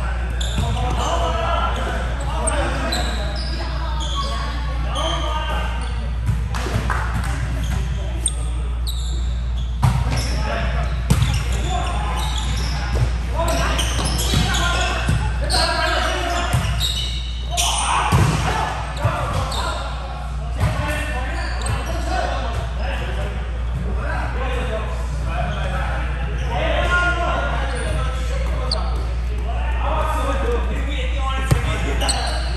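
Indoor volleyball rally in a gym: several sharp smacks of the ball being hit and hitting the court, the clearest about ten and eighteen seconds in, over players' indistinct calls and chatter. A steady low hum runs underneath.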